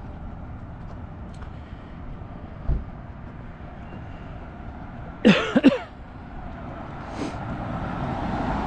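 A man coughs in a quick burst of three sharp coughs a little past halfway, over steady street traffic noise. Near the end, the sound of a car approaching builds up.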